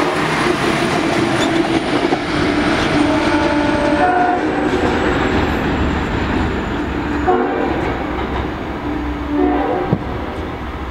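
A diesel-hauled Long Island Rail Road train runs past close by and pulls away, with continuous wheel and engine rumble. Its horn sounds in short blasts about four seconds in, again a little past seven seconds, and once more near the end.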